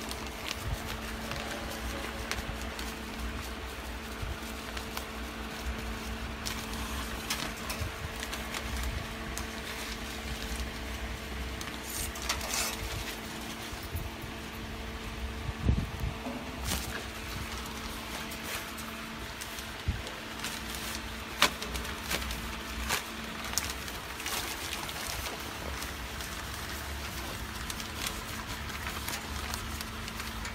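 A steady machine hum with a constant low tone, with scattered short clicks and rustles of plastic packaging film being cut and handled while it is threaded into a vertical packing machine; the sharpest clicks come about halfway through and about two-thirds of the way through.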